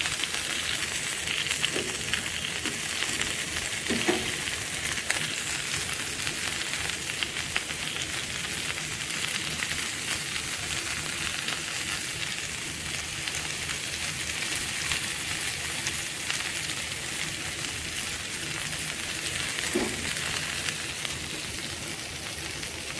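Beef and bell-pepper kebabs sizzling on a hot ridged grill pan: a steady frying hiss with fine crackles and pops.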